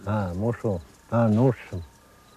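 An elderly man speaking Cree in two short phrases, with faint insect chirps repeating behind his voice.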